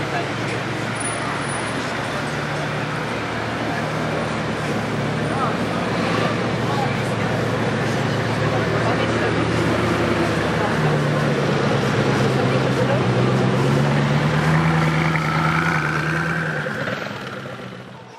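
Bugatti Veyron's quad-turbo W16 engine running at low revs as the car pulls away in slow street traffic, a steady low drone that grows louder, then fades near the end. Crowd chatter and traffic noise around it.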